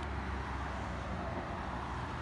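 Steady road traffic noise with a low rumble.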